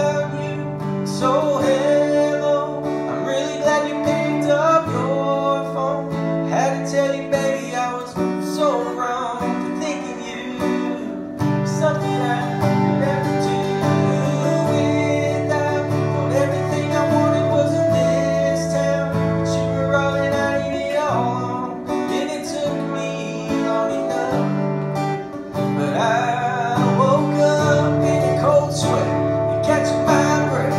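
Cutaway acoustic guitar strummed in a steady rhythm, with a man singing along to it in a country song.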